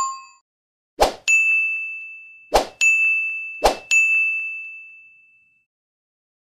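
End-screen animation sound effects: three quick swoosh-pops about a second and a half apart, each followed by a bright, single-pitched ding that rings and fades, the last one dying away about five and a half seconds in.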